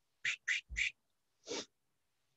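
Pencil drawing on paper: three quick short strokes in the first second, then one more about a second and a half in, as a small curved line is sketched.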